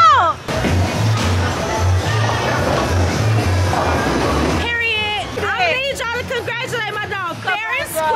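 Background music with a steady low beat. A dense noisy wash fills the first half, and excited voices take over from about halfway through.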